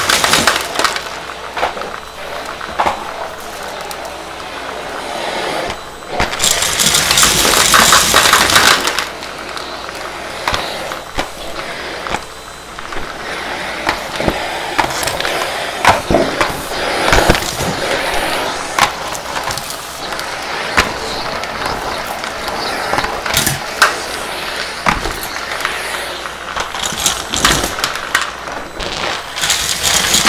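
Numatic Henry canister vacuum running as its floor tool works over a carpet strewn with pennies and crumbs, with a steady suction noise and many sharp clicks and rattles as debris and coins are picked up or knocked about. The suction is loudest for a few seconds starting about six seconds in.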